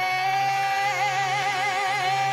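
Song intro: a single high sung note held long, steady at first, with vibrato coming in about a second in, over a low steady tone.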